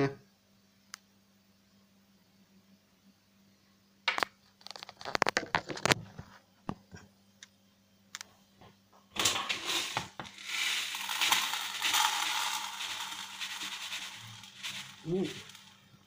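Gravelly paydirt poured from a bucket into a plastic gold pan: a few handling knocks and clicks, then a rushing, rattling pour of pebbles and grit for about five seconds that tails off.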